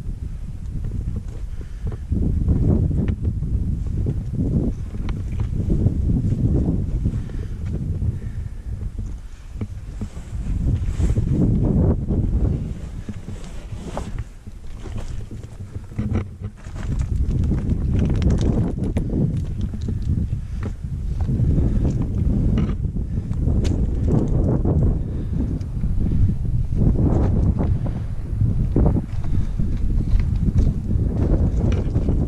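Wind buffeting the microphone in uneven gusts, with boots crunching and clicking on loose rock and scree as a hiker climbs a rocky gully.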